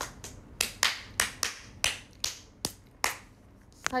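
Wet mouth smacks and clicks from chewing pizza, about a dozen short, sharp ones at an irregular pace of two to three a second.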